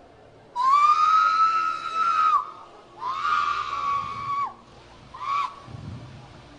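A woman screaming: two long, high-pitched screams of nearly two seconds each, sliding up at the start and down at the end, then a short yelp near the end.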